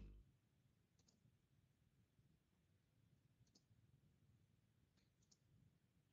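Near silence: room tone with three very faint, short ticks spread through it.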